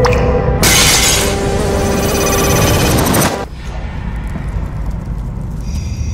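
Horror trailer score with a loud crash-like sound effect about half a second in, lasting until about three seconds. It then drops to a quieter low drone, and new tones build near the end.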